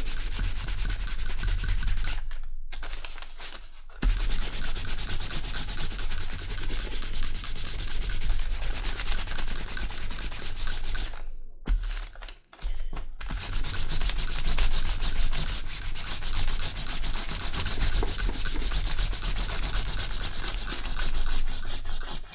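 A cloth-wrapped dye block rubbed back and forth over stamped leather lying on paper, a steady scrubbing that lays dark dye only on the raised surface (block dyeing). It goes quieter about two seconds in and stops briefly near the middle.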